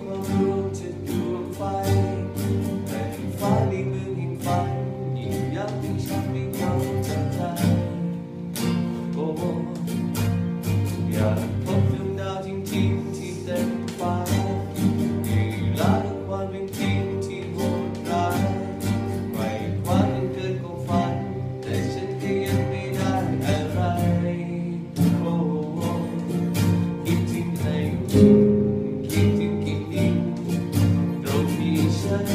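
Nylon-string classical guitar played fingerstyle as a solo arrangement: plucked melody notes over a steady bass line.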